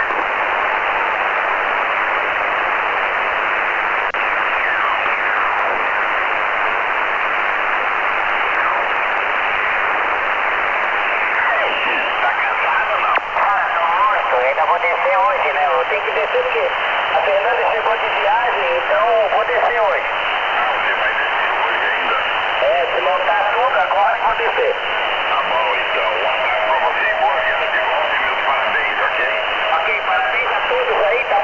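Shortwave single-sideband reception on a Kenwood HF transceiver: a steady hiss of band noise, with a distant station's faint, garbled voice coming through it from about twelve seconds in. A steady whistle joins near the end.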